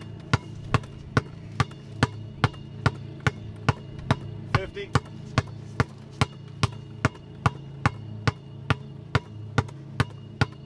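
Basketball dribbled hard on asphalt, one hand, in a steady, even rhythm of about two and a half bounces a second.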